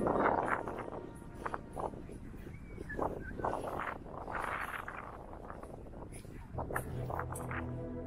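Faint outdoor ambience with scattered short sounds, then background music with steady held low notes comes in about two-thirds of the way through.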